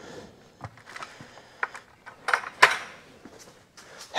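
A few separate light clicks and knocks as a plastic bucket full of ice is handled and set down on a scale, its thin wire handle clinking.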